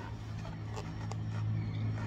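A steady low hum with a few faint light clicks from a clear plastic fuel sampler cup and a cloth being handled at an aircraft's wing-tank fuel drain valve.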